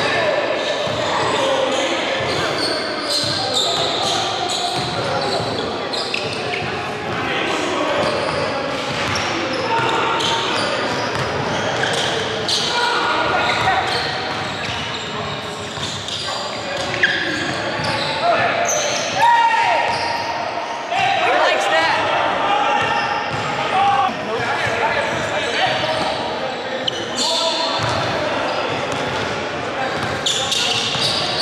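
Basketball being dribbled and bounced on a hardwood gym floor, with players' voices, all echoing in a large hall.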